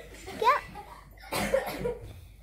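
A girl's voice: a short rising squeal about half a second in, then a harsh, breathy cough-like burst about a second and a half in, amid laughter.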